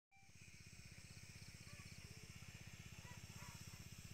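Faint, steady low chugging of a small engine running at an even speed, the motor pump that feeds a hose sprayer misting longan trees. A few faint bird chirps sound over it.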